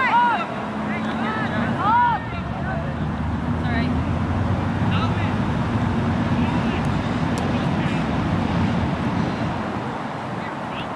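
Two loud drawn-out shouts, one right at the start and one about two seconds in, then a steady low rumble through most of the rest.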